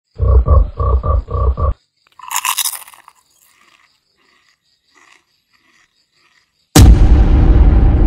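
Edited-in sound effects: four heavy low beats in quick succession, a short noisy swish, then a sudden loud boom near the end that runs on as a rumble.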